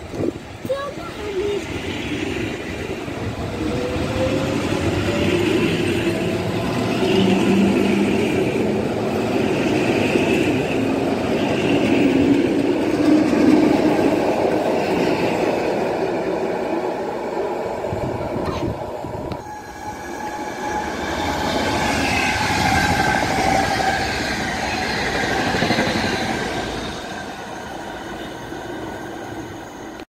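EN57AKM electric multiple unit pulling away and running on, its traction motor whine rising in pitch as it accelerates, over rumbling wheels on the rails. About two-thirds of the way in a second electric train, an EU47 electric locomotive, passes with a high electronic whine gliding up and down, then fades.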